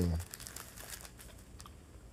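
A man's voice trailing off at the end of a sentence, then a pause with only faint crackling and light clicks in a small room.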